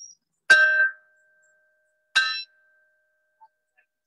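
Small wall-mounted gate bell rung by pulling its cord: two strokes about a second and a half apart, the first ringing on clearly until the second. It is the garden's bell, rung for closing time.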